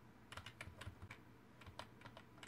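Faint typing on a computer keyboard: a scatter of light, irregular keystrokes.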